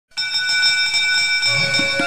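A bell struck once, ringing on with a long fade. Lower musical notes come in about one and a half seconds in as the opening theme music starts.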